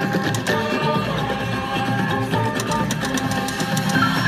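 Slot machine bonus-round music playing through the free spins, with a steady beat and short ticks as the reels spin and stop.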